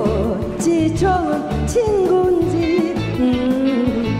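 A woman singing a fast hymn into a microphone over an upbeat backing track with a pulsing bass beat.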